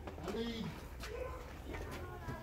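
Faint voices of a work crew talking and calling to one another, over a steady low background hum; no tool or impact sounds stand out.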